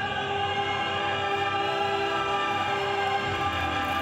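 Amplified operatic singing over an orchestral backing track, the voice holding long, steady notes.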